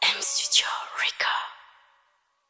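A whispered voice: breathy, hissing swells that sweep down and back up in pitch three or four times, then fade out.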